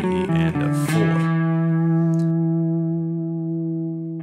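Electric guitar playing a fast run of single picked notes, a bluesy, chromatic lick, that lands about a second in on one low note held and left to ring, slowly fading.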